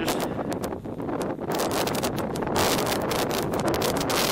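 Wind blowing across the camera's microphone, a steady rush that eases briefly about a second in.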